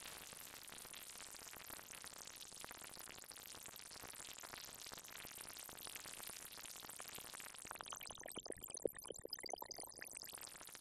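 Absynth 5's Aetherizer granular effect chopping a pure sine-wave tone into very short grains, giving a quiet, dense bubbling crackle of tiny glassy blips. The pitches are set by a randomized band-pass filter quantized to a minor-seventh chord. Near the end, as the grain rate is lowered, the texture thins into sparser, separate pitched ticks.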